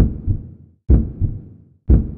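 Heartbeat sound effect: three low double thumps, lub-dub, about one beat a second.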